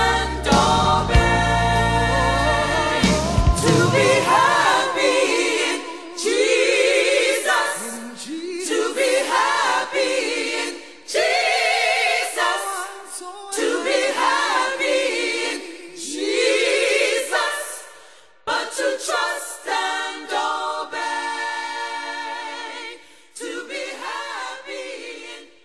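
Gospel choir singing, with instrumental backing at first that drops out about five seconds in, leaving the voices unaccompanied. The choir sings in long held phrases with vibrato, separated by short breaths.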